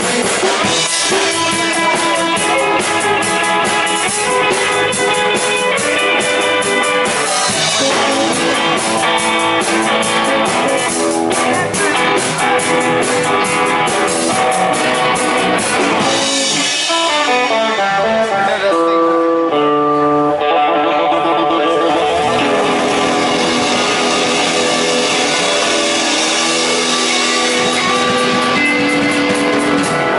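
Live bar band playing an instrumental boogie jam: electric guitars over a drum kit with steady cymbal time. About two-thirds through, the cymbals drop out briefly under a descending run of notes, then the full band comes back in.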